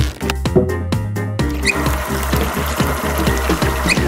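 Electronic music with a steady beat throughout. From about a second and a half in, a steady rush of tap water pours into a stack of layered rubber balloons held over the tap, filling them, and stops near the end.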